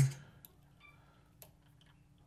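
Near-quiet work sound: a single faint metallic click about one and a half seconds in, from a small steel hex key turning a bolt in an aluminum extruder arm.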